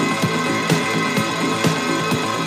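Dark disco electronic dance music from a DJ set: a steady kick drum beating about twice a second under sustained synth tones.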